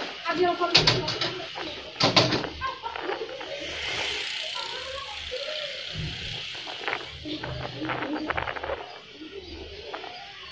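Low voices with background music, and two sharp clicks about one and two seconds in.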